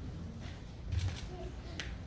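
A few faint short clicks, a cluster about a second in and another near the end, over low room noise in a pause between spoken phrases.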